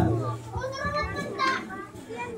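Children's voices chattering.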